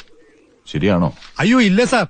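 A person's voice making two short, wordless vocal sounds, the first about two-thirds of a second in and the second just after a second in.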